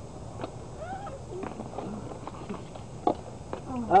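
Faint, short vocal sounds and murmurs, with a few sharp clicks as live crawfish are handled with tongs in a cooler.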